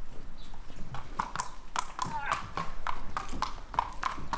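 Shod horse's hooves clip-clopping on concrete as it walks across a stable yard, a few irregular strikes a second, starting about a second in.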